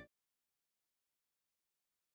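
Silence: the audio cuts to nothing, with only the last instant of the closing music at the very start.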